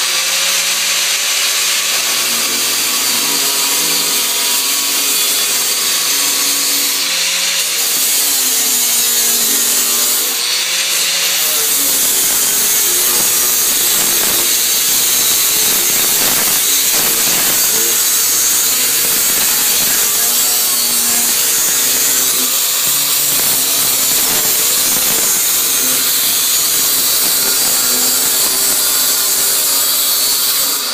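DeWalt angle grinder with a thin cut-off wheel cutting through 18-gauge sheet steel, running loud and continuously, its pitch wavering up and down as the wheel works through the cut.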